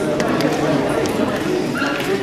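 Several people's voices talking over one another, with no single clear speaker.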